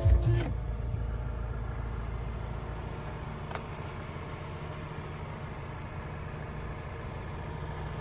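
Background music ends in the first half second, leaving the steady low hum of a Ford Transit Custom van's engine idling, heard from inside the cab. A faint click comes about three and a half seconds in.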